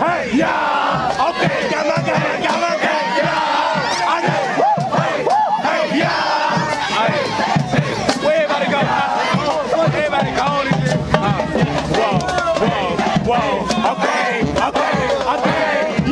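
A group of football players yelling and chanting together in a huddle, many male voices shouting at once, with scattered sharp claps or slaps.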